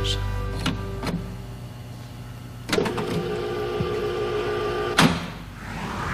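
Jukebox selector buttons being pressed, two light clicks, then a louder clack about two and a half seconds in followed by a steady held musical chord. Another sharp clack near the end cuts the chord off.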